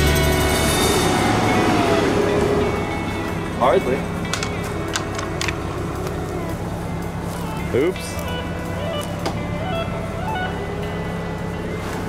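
Background music fading out over the first couple of seconds, then a vehicle engine idling steadily underneath, with a few sharp clicks a few seconds in and brief exclamations.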